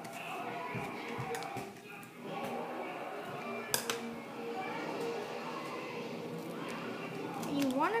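Indistinct background speech and music, as from a television, with a single sharp click a little before halfway.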